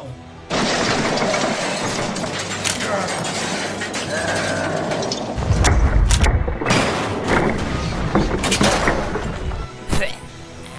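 A crash sound effect over music: a loud noisy crash with a heavy low boom about halfway through, along with scattered sharp cracks.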